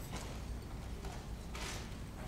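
Bharatanatyam dancer's ankle bells jingling with light footfalls on the stage as she kneels to bow and moves, in short bursts, the strongest near the end.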